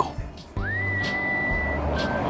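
A single whistle tone slides quickly up and holds steady for about a second, over a low steady rumble of street traffic that starts suddenly about half a second in.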